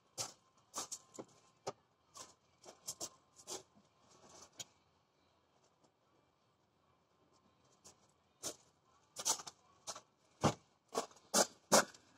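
Irregular light clicks and knocks, broken by a quiet stretch of about three seconds in the middle, and a little louder near the end.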